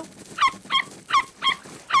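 Cartoon puppy barking excitedly: a quick string of five short, high yips, each falling in pitch, about three a second.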